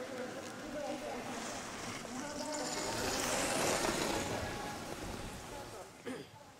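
Ski edges scraping and hissing on snow as a giant slalom racer carves turns past, swelling to its loudest about three and a half seconds in, then fading.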